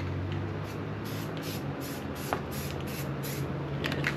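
Aerosol spray-paint can sprayed in a run of short hissing bursts as a test patch, checking that the can sprays evenly and isn't splattering after giving trouble before. A steady low hum runs underneath.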